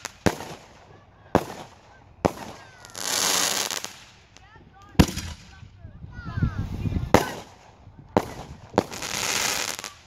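Consumer aerial fireworks going off: about seven sharp bangs of shells bursting across ten seconds, with two longer hissing bursts of about a second each, one near the middle and one near the end.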